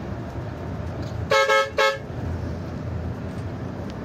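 Bus horn giving two short toots about a second and a half in, over the steady rumble of the coach's engine and tyres heard from inside the cab.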